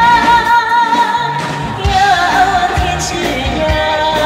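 A woman singing into a microphone over musical accompaniment with a regular bass beat. She holds long notes with vibrato, moving down to a lower note about halfway through.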